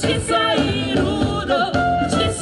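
Live music: a group of singers, male and female voices together, singing a song with accompaniment.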